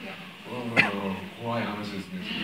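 A person's voice: two short vocal sounds of about half a second each, the first with a sharp peak a little under a second in.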